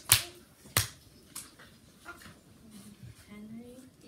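Two sharp taps or knocks, one right at the start and one under a second later, then a quiet room with faint voices.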